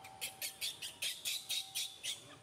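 Baby macaque squeaking in a rapid run of short, high-pitched cries, about four a second, while at its mother's breast.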